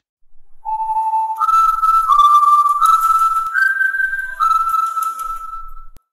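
A whistled tune of about six long held notes, stepping up and down in pitch, with a faint hiss behind it; it starts under a second in and stops just before the end.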